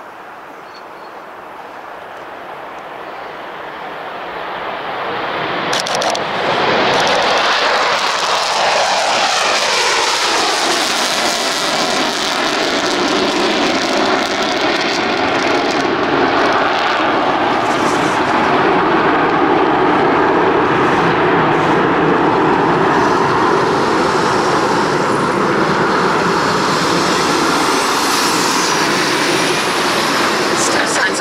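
Rockwell B-1B Lancer's four afterburning General Electric F101 turbofans on take-off, swelling from a distant rumble to a loud roar about six seconds in. Falling tones follow as the bomber passes, then a steady loud roar as it climbs away in afterburner.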